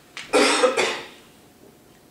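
A man coughing: a short, loud double cough about a third of a second in.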